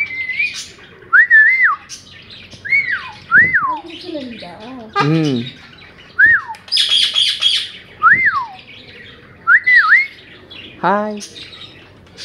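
Pet birds calling: a string of short whistles that each rise and then fall, about eight in all, with one harsh squawk about seven seconds in.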